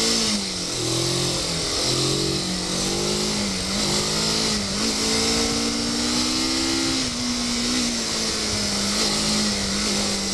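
Motorcycle engine heard from the rider's own bike, revving up and falling back again and again as the throttle is worked through a cone slalom. It holds a steadier note for a couple of seconds near the middle, over a constant rush of wind noise.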